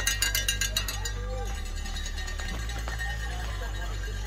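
A bell shaken rapidly, about six strikes a second, stops about a second in. A steady low rumble and faint voices follow.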